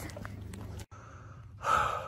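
A man out of breath after exertion, drawing one loud gasping breath about one and a half seconds in, after a brief stretch of faint background noise that cuts off abruptly.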